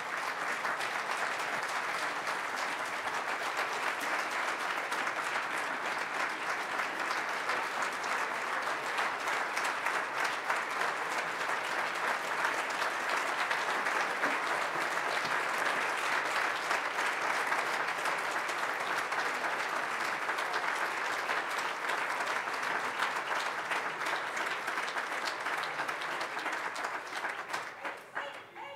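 Large audience giving a standing ovation: steady, dense clapping that dies away near the end.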